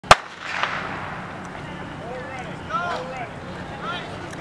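A starter's pistol fires once, a sharp crack that starts the 100 m hurdles race. Spectators then shout several drawn-out cheers.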